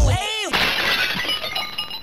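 The outro music's beat cuts off, a short swooping glide follows, and then a glass-shattering sound effect crashes in about half a second in, its tinkling pieces ringing and fading away.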